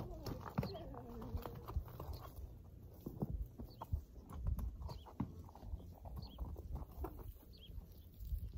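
Horse hooves knocking and scuffing irregularly on straw-covered dirt as the horse walks and shifts about. A short pitched sound falls in pitch about half a second in.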